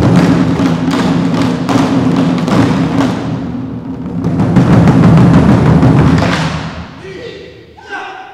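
Chinese drum ensemble playing barrel drums in rapid, dense rolls and strokes. The drumming swells loud around five seconds in, then dies away near the end.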